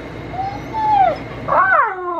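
Husky whining in its crate in two drawn-out calls: a soft one that rises and falls about half a second in, then a louder, higher one near the end that slides down in pitch. The dog is whining to be let out of the crate.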